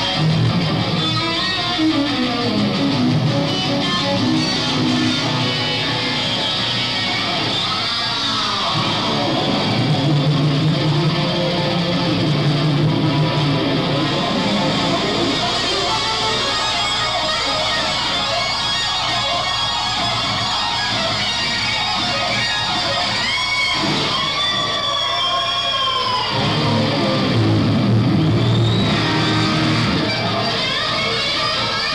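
Electric guitar solo played live on a rock stage. Sustained notes run throughout, and about three quarters of the way through come several swooping bends that rise and fall in pitch.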